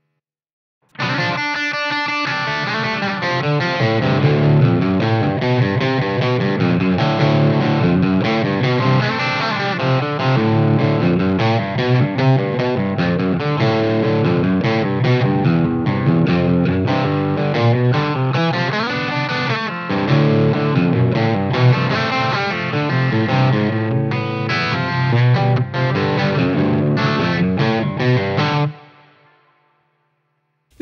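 Fender Telecaster played with overdrive from a Greer Lightspeed pedal and pitched down by a DigiTech Drop pedal, heard through a miked Victory DP40 amp. It is a continuous passage of distorted chords and notes that starts about a second in and rings out and fades near the end.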